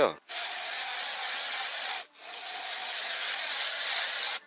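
Batiste aerosol dry shampoo spraying in two long bursts of hiss, each close to two seconds, with a brief break between them.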